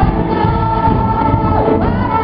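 A live worship band playing a children's praise song, with a woman singing through a microphone over electric bass and other voices joining in. A long note is held for about a second, then slides down near the end.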